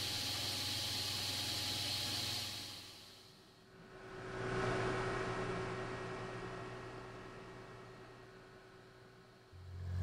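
Steady hiss of a water-and-compressed-air mist spray with a low hum under it, fading out about three seconds in. Then a mechanical drone with a steady tone swells in and slowly dies away.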